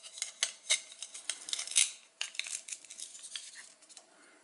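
Hard plastic toy food being handled: a toy corn cob and its plastic husk leaves clicking and scraping over a plastic bowl of toy pieces, a quick run of small clicks with a short pause a little past halfway.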